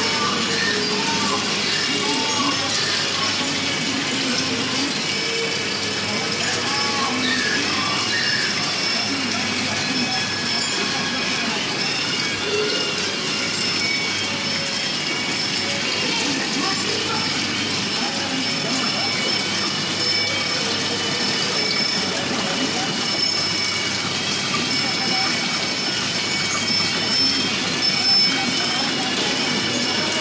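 Indistinct voices of people talking in the room, no words clear, over steady high-pitched tones in the background.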